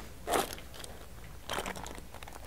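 Quiet lecture-hall room noise with two brief rustling or knocking sounds, one about a third of a second in and a weaker one near the end.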